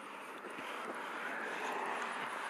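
A road vehicle approaching: a steady rush of tyre and road noise that grows gradually louder.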